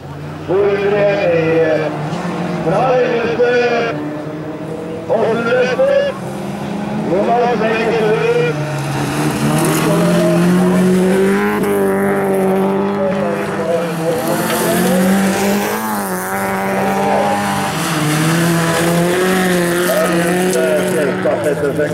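Rallycross car engines running hard round a gravel track, their pitch rising and falling through the first half. From about halfway the sound settles into a steadier drone, with a few quick revs near the end.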